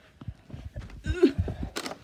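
Footsteps on carpet and the rustle of a hand-held camera being carried, with scattered soft thumps and a louder rustle near the end.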